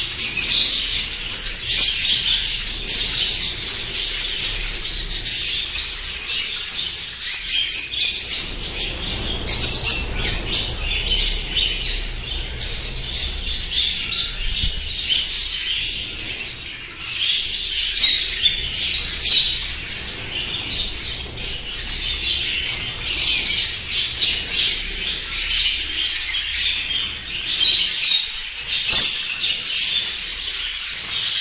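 A large flock of budgerigars chattering and chirping loudly and without pause, with wings flapping now and then as birds fly in and out.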